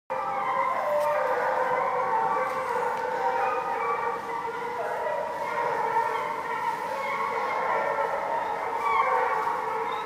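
A pack of Penn-Marydel foxhounds in full cry, many hounds baying at once in long, overlapping notes. The rest of the pack is joining the hounds that first opened on the fox's line.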